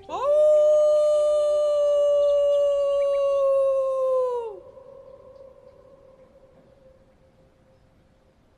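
A single long wolf howl: it rises quickly at the start, holds a steady pitch for about four seconds, then drops away. A faint lingering tone fades out after it.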